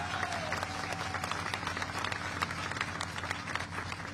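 Crowd applauding: a dense, steady patter of many hands clapping.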